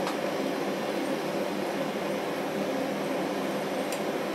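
Steady, even hum and rush with faint steady tones and no separate events.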